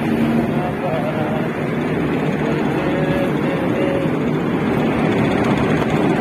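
Loud, steady whooshing drone of large electric fans and air coolers running, with faint voices behind it.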